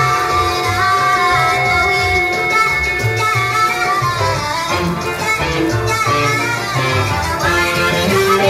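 A rave-punk band playing live, loud and continuous, over a rhythmic bass line with held and gliding higher tones.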